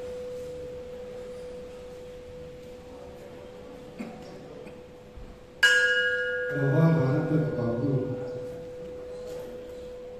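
A hanging brass bell struck once about five and a half seconds in, its several ringing tones lingering after the strike over a steady ring that holds throughout.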